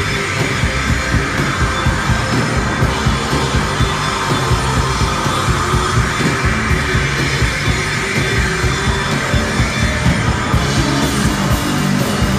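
Noise-gaze rock band playing live: loud electric guitars and bass over a steady drum beat.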